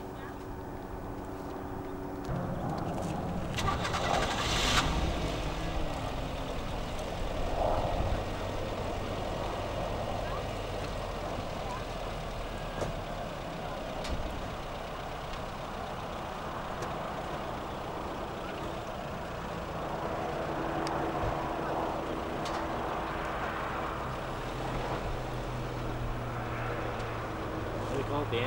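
Motor vehicle engines and traffic running steadily, with a low engine hum underneath and a brief loud hiss about four seconds in.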